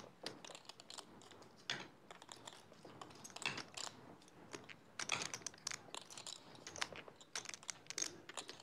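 Faint, scattered clicking of poker chips handled at the table, coming in small clusters every second or two.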